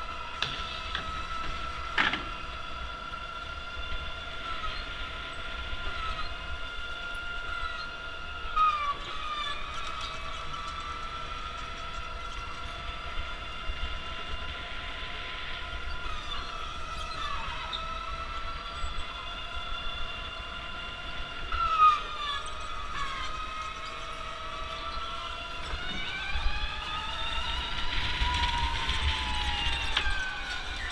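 Indoor electric go-karts running at speed: a high motor whine of several tones that rises and falls with speed and climbs in pitch near the end, with a couple of brief squeals about nine and twenty-two seconds in, over low wind rumble on the microphone.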